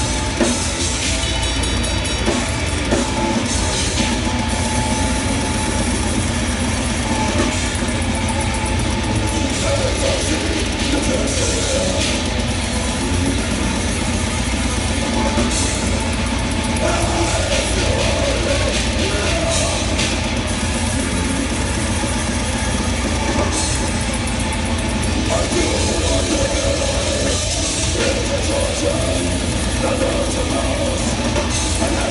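Live extreme metal band playing at full volume: distorted electric guitar over a fast, pounding drum kit, with harsh screamed vocals.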